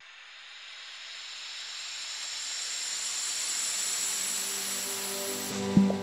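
Logo sting sound effect: a hissing whoosh that swells steadily for about five seconds, then a deep impact hit with a low ringing tone near the end.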